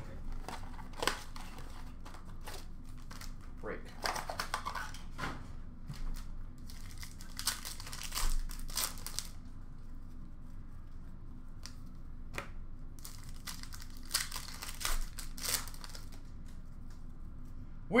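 Foil hockey-card pack wrappers being torn open and crumpled by hand: irregular crinkling and short ripping sounds.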